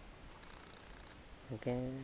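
Faint, even background with no distinct sound, then a man's voice near the end saying one drawn-out word.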